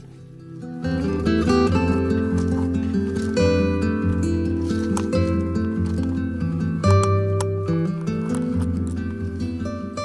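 Background music with held notes, coming in about a second in.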